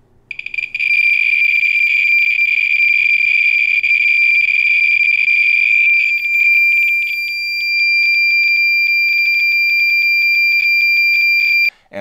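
Thermo Scientific RadEye B20 survey meter's beeper sounding for each count over a uranium-oxide-glazed plate: a few separate clicks about a third of a second in quickly run together into a loud, steady high-pitched buzz at a count rate of about 14,000 counts per minute. From about halfway the buzz is broken by rapid uneven clicks, and it cuts off suddenly just before the end.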